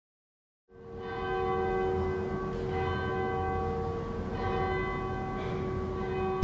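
Church bells ringing, fading in just under a second in: many sustained, overlapping tones with fresh strikes every second or two.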